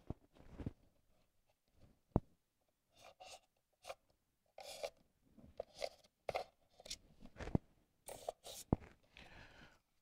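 Faint, scattered scratching and crunching of a pen tracing around a single-gang electrical box held against an expanded polystyrene foam wall, with a few small clicks as the box shifts on the foam.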